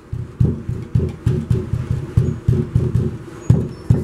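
A hand patting and pressing a hollow clay block to seat it into its cement-glue mortar joint, giving a series of dull knocks about three a second.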